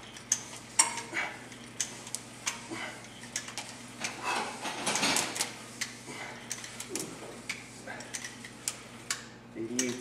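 Irregular sharp metallic clinks and rattles from a cable machine in use, as its metal handles and cable clips knock and jingle through repeated pulls.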